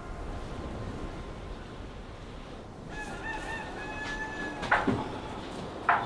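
A rooster crowing about halfway through, over a steady low background hiss, followed by two short, loud sounds near the end.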